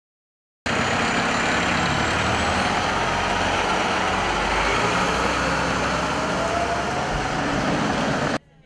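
Fire engine's engine running loud and steady, cutting in suddenly about half a second in, with a faint rising whine in the second half.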